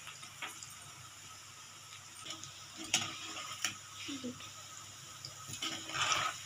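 Spice-coated peanuts deep-frying in hot oil in a kadhai on a high flame: a steady, faint sizzle, with a few light clicks scattered through it.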